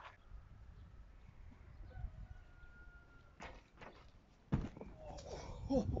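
A few sharp knocks about three and a half seconds in, then a heavier thud about a second later as a person comes down from a frontflip attempt onto a mattress and falls. Gasped "oh, oh" follows near the end.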